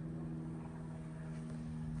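Steady low mechanical hum at a constant pitch, with a faint rumble beneath it.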